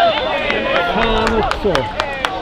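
Men's voices shouting and calling across a football pitch, with a few sharp clicks in the second half.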